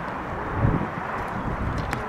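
Wind buffeting the microphone in uneven gusts, with a stronger gust about half a second in and a faint click near the end.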